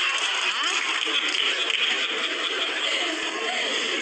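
A live studio audience laughing in one steady, dense wash, with faint speech underneath.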